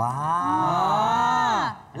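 A long drawn-out 'waaa' of dismay from voices held together, a mock-disappointed Thai 'ว้า'. Its pitch rises gently, then falls and stops sharply near the end.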